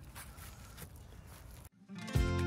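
Faint outdoor background noise with a few faint ticks, cutting off abruptly near the end.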